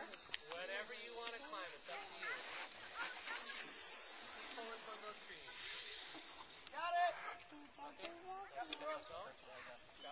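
Indistinct chatter of several voices, with a louder high-pitched voice calling out about seven seconds in.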